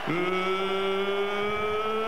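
A ring announcer's voice drawing out one long shouted call, held steady for about two seconds and rising slightly in pitch near the end, as in the stretched-out name of the champion.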